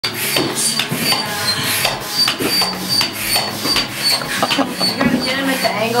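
Manual air pump inflating an air mattress, worked in quick, even strokes of about three a second, each stroke with a short rasping squeak.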